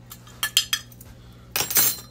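Kitchenware clinking as a cinnamon shaker is shaken over a glass measuring cup of sugar: a few sharp clinks about half a second in, then a brief scraping rattle near the end.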